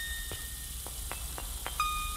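Soft ringing chime-like tones: one rings on and fades within the first second, a few faint ticks follow, and two new tones strike near the end.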